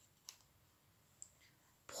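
Near silence with two faint, short clicks, one about a third of a second in and one just after a second in; a woman's voice starts right at the end.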